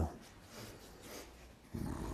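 A short lull of faint room noise right after a voice ends a phrase. Near the end a low hum comes in.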